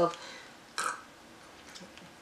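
A pause in a woman's talk, broken about a second in by one brief breathy sound from her mouth or throat, with quiet room tone around it.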